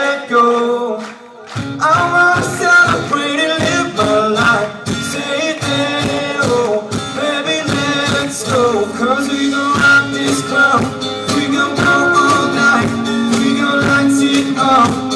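Live band playing a pop song, with acoustic and electric guitar and singing. After a brief dip about a second and a half in, the bass and a steady beat come back in.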